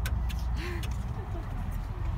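Steady low rumble of a small boat under way on open water, with a few brief clicks about half a second in.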